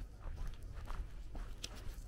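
Footsteps of a person walking on a gritty asphalt lane, a few steps a second, over a steady low rumble.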